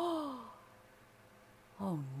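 A woman's voiced sigh, falling in pitch over about half a second, followed near the end by the spoken word "Oh".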